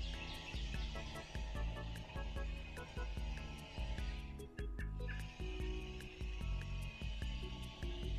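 Music with a steady beat over repeating bass notes, thinning out briefly about halfway through.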